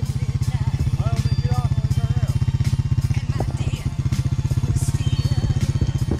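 A four-wheeler's engine running steadily, with a fast, even low pulse, as it tows a sled through snow.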